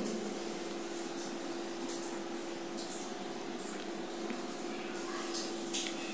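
Faint wet swishing of a hand being rubbed and wiped by the other hand to wash off a facial mask, a few short swishes over a steady low hum.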